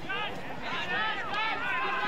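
Several people talking at once, in overlapping, lively chatter.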